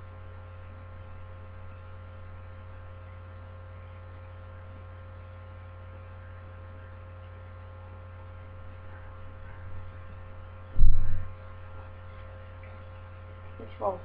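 Steady electrical mains hum, a low drone with several fixed higher tones over it, and a single short low thump about three quarters of the way through.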